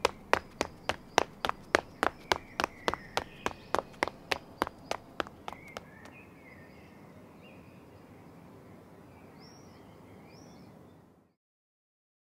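Footsteps, about three a second, growing fainter over about five seconds until they die away. After that a faint outdoor background with a few thin bird chirps, cut off suddenly near the end.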